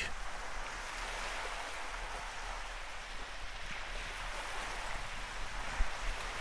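Steady wash of small waves on a shell and pebble beach.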